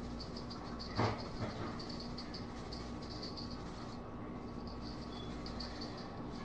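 Faint sounds of chicken being seasoned by hand in a stainless steel bowl: a sharp knock about a second in, against a low steady hum and faint high ticking.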